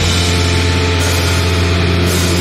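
Post-hardcore rock band playing a loud instrumental passage, a distorted low chord held steady with no vocals.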